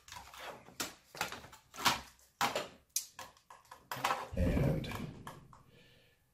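Small irregular clicks and taps of a screwdriver and a laptop hard drive in its metal caddy being handled as the side screws are taken out, then a low rumble of handling for about a second near the end.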